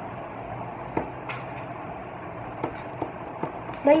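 A few light clicks and taps from a small homemade yo-yo being handled, over a steady background hiss.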